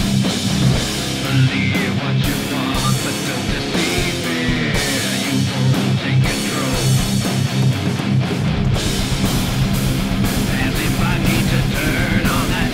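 Heavy rock music with guitar and drums laid over the pictures, with a steady beat.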